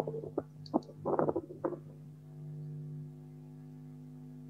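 Low steady electrical hum on a Zoom call's audio, with a few short, faint sounds in the first two seconds and then only the hum.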